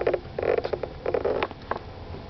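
A domestic cat purring close to the microphone, coming in three or four short rattling bursts.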